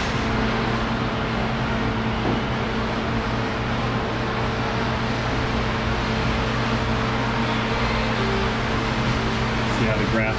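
Steady running of a fan: an even rush of air over a constant low hum, unchanging throughout.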